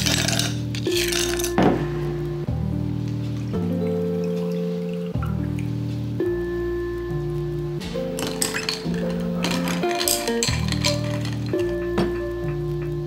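Background music of slow, held chords changing every second or two. Over it, ice cubes clink into a glass tumbler in the first two seconds, with more glassy clinks of ice about eight to ten seconds in.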